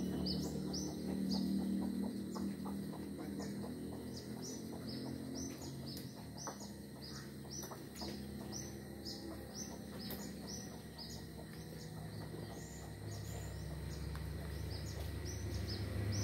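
A bird calling over and over, a fast series of short high notes each sliding down in pitch, about two or three a second, over a low rumble that grows louder near the end.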